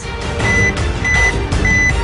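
Dramatic suspense music with a low pulsing bass, under a short high electronic beep that repeats about every 0.6 seconds, three times. This is the weigh-in scale's reveal beeping, building to the reading.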